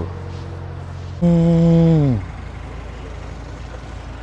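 A person's voice holding one drawn-out wordless note for about a second, steady in pitch and then dropping away, over a low steady hum.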